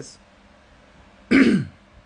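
A man clearing his throat once: a short, loud sound with a falling pitch about one and a half seconds in.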